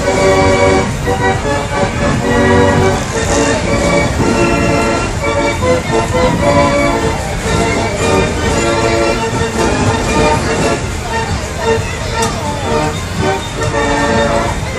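Fairground organ music playing on a steam-driven galloper carousel: a tune of short held notes stepping from pitch to pitch, over a dense low rumble.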